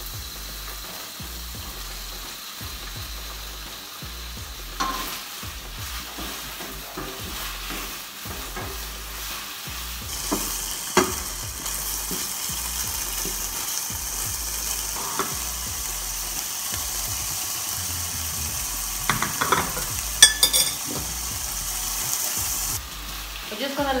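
Bacon and sliced mushrooms sizzling in a frying pan while being stirred with a wooden spatula, with occasional knocks of the spatula against the pan. The sizzle grows louder about ten seconds in and drops off suddenly near the end.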